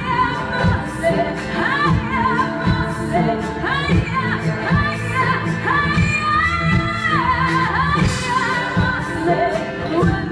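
A woman singing a melody with sliding, ornamented pitches and one long held note about six seconds in, backed by a live band playing bass guitar and a steady drum beat.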